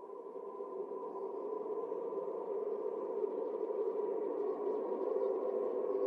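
A sustained ambient drone, like a synth pad, swelling steadily from faint to moderately loud as the intro of a metal song.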